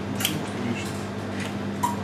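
A few short, light clicks and clinks of small hard objects being handled, the sharpest about a quarter second in, over a steady low electrical hum.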